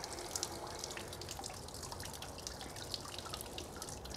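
Faint, steady patter of water spattering and dripping out of an RV water heater's drain opening as a tank-rinser wand flushes calcium buildup out of the tank.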